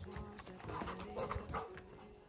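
Background music with a soft beat, and a large dog making a few short vocal sounds about a second in while it plays with a ball in its mouth.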